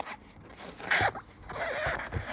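Sheets of paper in a stack being handled and slid against each other: short papery swishes, the loudest about a second in, then a longer slide near the end.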